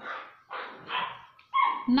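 A dog barking a couple of times, two short barks close together.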